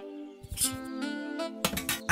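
Gentle background music: held plucked-guitar notes, with a few short clicks about half a second in and again near the end.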